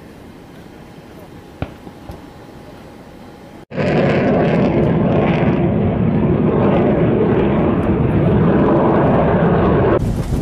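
Loud, steady jet aircraft engine noise that cuts in abruptly about four seconds in, after faint background hiss broken by a single click.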